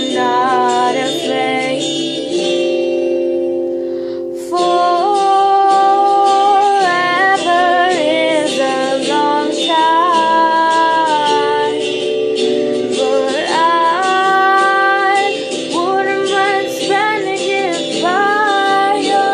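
A female voice singing long held and sliding notes, with no clear words, over a steady accompaniment. The singing breaks off briefly about four seconds in, then comes back in.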